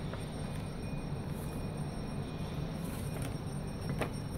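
A paper instruction leaflet being handled, with a few soft rustles and light ticks, over a steady low background rumble.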